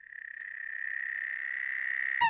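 A steady high-pitched tone with overtones and a fine fast flutter, slowly swelling in loudness: a cartoon sound effect or high held note.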